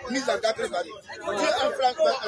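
Speech only: men talking, with several voices chattering at once.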